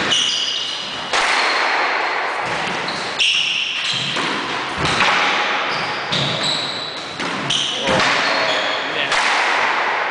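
Squash rally: the ball is struck sharply off rackets and the court walls about once a second, each hit ringing in the hard-walled court. Short high squeaks of shoes on the wooden floor come in between the hits.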